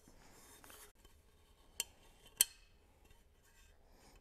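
Two sharp metal clinks about half a second apart, the second louder, with faint rustling, as the aluminium intercooler pipe and its small fittings are handled.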